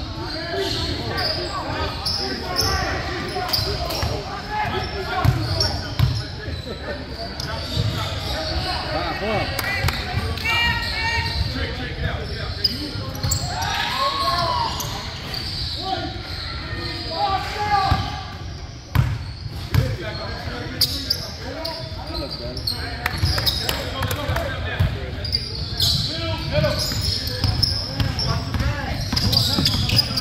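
Basketball bouncing on a hardwood gym floor, repeated knocks that echo in a large hall, over indistinct voices of players and spectators.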